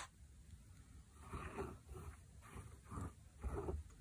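Plastic squeeze bottle of water-based contact cement being squeezed as a line of glue is laid on leather. It gives about five short, soft squelches and puffs of air through the nozzle.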